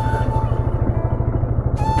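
Yamaha FZ's single-cylinder engine idling in neutral, a steady rapid pulsing of about ten beats a second.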